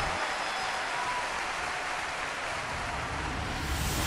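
Steady hiss-like wash of noise from an animated logo sting's sound effects. A low rumble comes in near the end.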